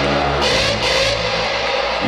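Hardstyle dance music played loud over a club sound system: a synth passage on steady held low notes, with no vocal.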